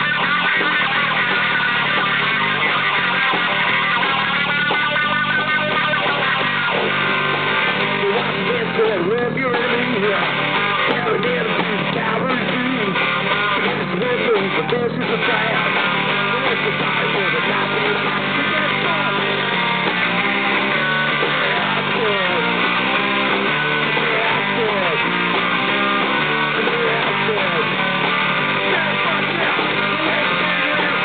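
Punk rock band playing live: electric guitar, bass guitar and drum kit, dense and steady throughout.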